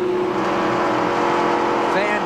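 A NASCAR Cup stock car's V8 engine heard from inside the cockpit through the in-car camera, running at a steady speed as an even, unchanging drone.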